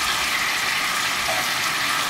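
Miso-butter noodle sauce sizzling steadily in a frying pan over a gas flame while the noodles are stirred with a wooden spoon.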